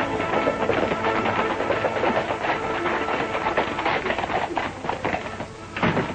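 Film score music playing over the dense clatter of several horses' hooves on a dirt street, with one sharp knock near the end.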